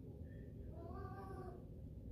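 A single faint meow that rises and then falls in pitch, about a second in.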